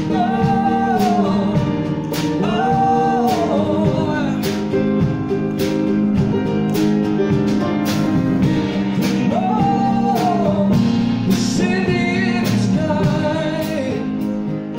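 Live band music: a man singing long held phrases over strummed acoustic guitar and a steady drum beat.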